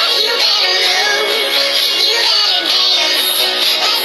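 A recorded pop song playing loudly and without a break, with a young girl singing along to it.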